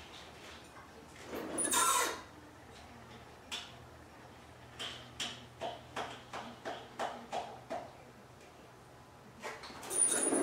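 Metal parts and hand tools knocking and scraping as a transfer case is worked up into place against a Jeep's transmission from underneath. A louder scraping clatter comes about two seconds in, then a quick run of about a dozen short knocks.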